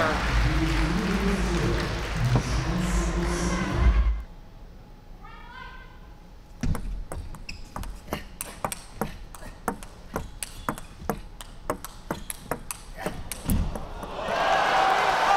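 Loud arena crowd noise, which falls away about four seconds in. A run of sharp, irregular clicks from a table tennis ball follows, several a second.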